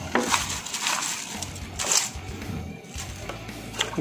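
Irregular crackling and rustling of hand-handling, with a few sharper clicks and knocks, as dried, chopped ketapang (Indian almond) leaves and large plastic buckets are moved about.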